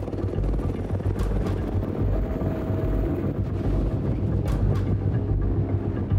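Helicopter running close by: a steady low rumble of engine and rotor with rapid blade chop.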